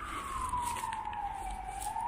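Emergency vehicle siren wailing: a single tone sliding slowly down in pitch, then starting to climb again near the end.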